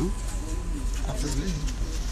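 Indistinct low voices of people close by, over a steady low rumble.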